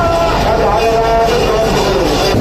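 Loud, steady street-festival noise: many voices mixed with held, horn-like tones that shift in pitch every half second or so.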